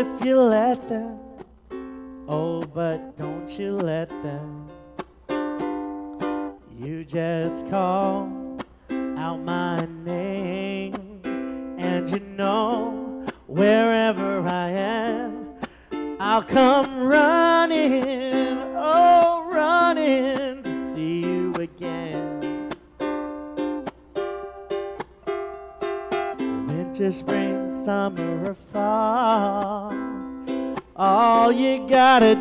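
Ukulele strummed while a man sings along, his voice wavering on held notes through the middle of the passage.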